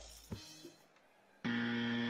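Near silence for about a second and a half, then music comes in with a steady held note.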